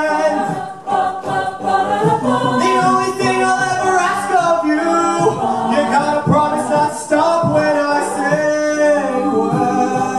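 A mixed-voice a cappella group singing in sustained harmonies behind a male lead, with vocal percussion keeping a steady beat.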